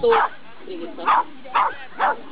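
A small dog yipping in short, sharp barks, twice in the second half, with a woman's brief word of encouragement at the start.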